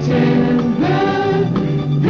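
A choir singing a TV network promotional jingle over band backing, with held chords that change every half second or so.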